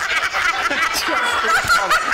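People chuckling and laughing, mixed with some talk.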